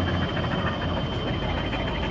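Steady rushing background noise with a thin, high, steady whine running through it.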